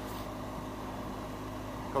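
Steady riding noise from a BMW R1200GS Adventure at cruising speed: the boxer-twin engine and road noise held at an even level.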